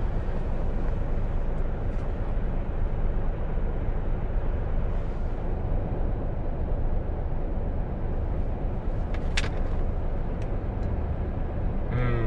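Truck's diesel engine idling, a steady low rumble heard inside the cab, with a light click about nine seconds in.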